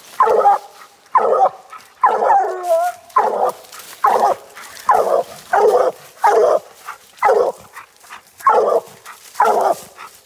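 Bluetick coonhound barking treed: a steady run of loud, short chop barks, a little over one a second, with one longer wavering note about two seconds in. This is the tree bark that signals the quarry is up the tree.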